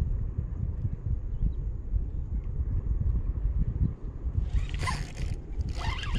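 Low, uneven rumbling noise on the camera microphone, with a short hiss about four and a half seconds in.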